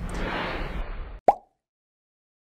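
A single short, pitched 'plop' sound effect about a second in, marking an animated logo transition, heard over a steady room hiss that cuts off suddenly with it.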